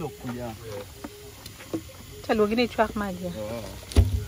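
People talking, with speech that cannot be made out, and a few short sharp pops from the wood fire burning in the brick kiln's firing tunnel.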